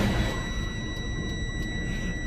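Low rumble of a Freightliner's DD15 diesel and road noise inside the cab as the truck crawls along in an engine-shutdown derate, with a steady high-pitched tone over it.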